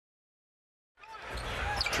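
Complete silence at an edit for the first second, then live basketball game sound fades in: arena crowd noise with a ball being dribbled on the hardwood court.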